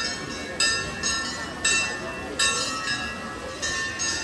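Metal bells struck again and again at uneven intervals, about once a second, each stroke ringing with several high tones and fading, over the chatter of a crowd.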